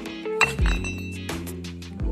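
Loose steel gears and synchronizer rings from a disassembled Hino truck transmission clinking against each other as they are handled, over background music with guitar.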